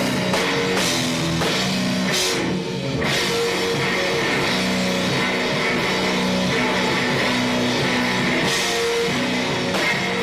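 Live rock played by electric guitar and drum kit, loud and steady, the guitar holding sustained notes over continuous drumming. About two and a half seconds in, the cymbals drop out for a moment before the full kit comes back.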